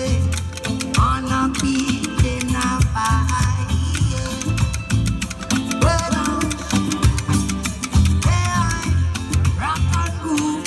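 Live street-busker reggae music with a heavy, repeating bass line and a steady beat, and some guitar.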